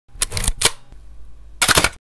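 Camera shutter clicks in an intro sound effect: a couple of sharp clicks in the first half-second, then a quick run of clicks about one and a half seconds in, over a low hum, cutting off suddenly.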